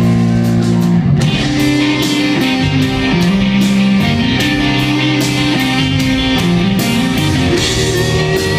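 Live rock band playing an instrumental passage: distorted electric guitars over bass and drums, with regular cymbal and drum hits. The band shifts into a new section about a second in.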